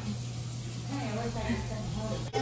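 A faint voice over a steady low hum, with a light hiss.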